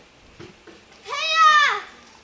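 A single loud, high-pitched call, about a second in, rising and then falling in pitch over just under a second.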